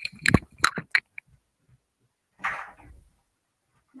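A few sharp clicks and knocks in the first second, then a short rustle about two and a half seconds in, with dead silence between: handling noise at a device's microphone.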